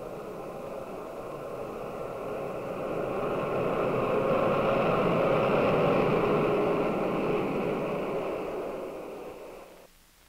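Jet aircraft engines running as the plane passes: a rushing roar with a high whine swells to a peak about midway, then fades and cuts off just before the end.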